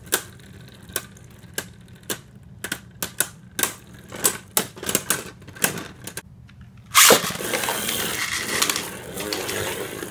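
Two Beyblade Burst tops clashing in a plastic stadium, sharp clacks coming quicker and quicker. About seven seconds in comes one loud hit, then a steady rattling scrape.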